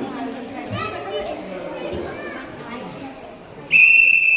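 Children and adults chattering, then near the end one loud, high, steady whistle blast about a second long.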